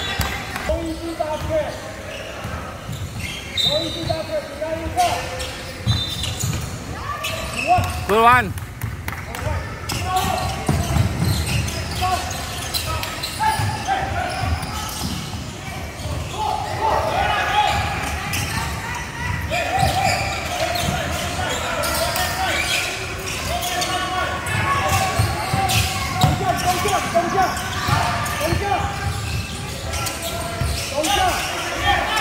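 A basketball bouncing on a hardwood court during live play, in a large echoing sports hall. Voices call out across the court, busier in the second half, and there is one short sharp rising squeak about eight seconds in.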